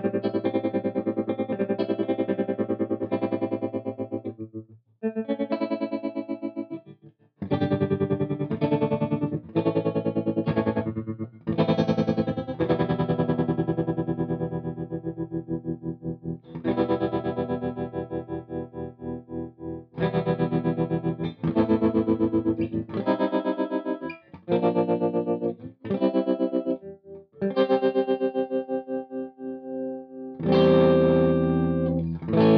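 Electric guitar played through a Spaceman Effects Voyager I optical tremolo pedal and a Mesa/Boogie Mark V amp: chords and riffs whose volume pulses quickly and evenly. The playing comes in phrases broken by short pauses, the longest about five and seven seconds in.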